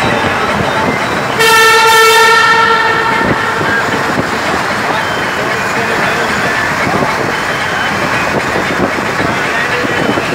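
A vehicle horn sounds once for about a second and a half, one steady note, over the steady road and engine noise of a vehicle driving through a road tunnel.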